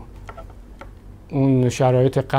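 A man speaking to the camera: a pause of about a second with only low room noise, then his voice resumes.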